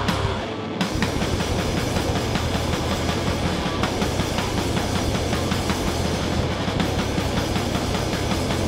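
Live rock band playing loud with distorted electric guitars, bass guitar and drum kit, without vocals. The low end drops out briefly about half a second in, then the full band comes back in with a fast, driving, steady beat.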